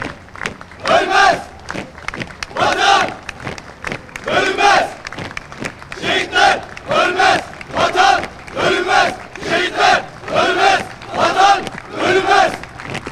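A marching column of sailors shouting a cadence in unison as they march. The shouts come about every second and a half at first, then quicker, roughly one every three-quarters of a second from about six seconds in.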